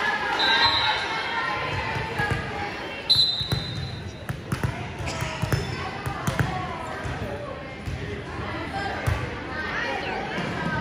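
A volleyball bouncing on a hardwood gym floor before a serve, with two short blasts of a referee's whistle, about half a second in and again about three seconds in. Voices of players and spectators carry on throughout in the echoing hall.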